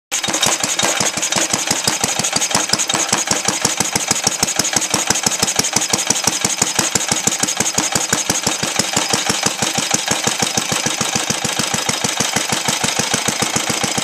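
Old cast-iron Briggs & Stratton single-cylinder four-stroke engine with a glass head, running on natural gas, its firing strokes coming in a rapid, even beat.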